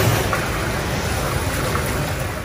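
Steady busy-kitchen noise, an even hiss, with broth being ladled and poured into bowls.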